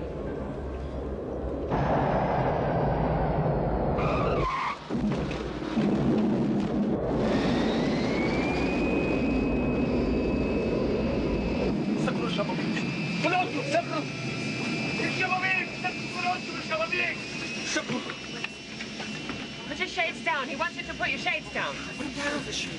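Jet airliner landing: a loud rushing rumble fills the cabin, and a high engine whine rises about seven seconds in and then holds. Scattered voices and cries of passengers come in over it in the second half.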